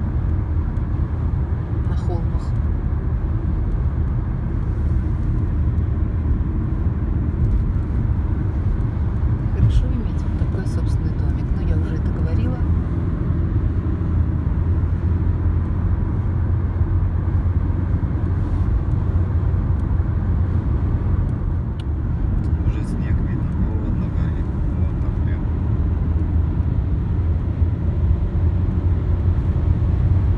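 Steady low rumble of tyres and engine heard inside a car cabin at expressway speed, with a few faint ticks.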